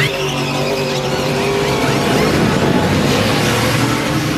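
NASCAR Cup stock cars' V8 engines running together in a steady drone, one engine note sinking slightly in pitch in the first couple of seconds.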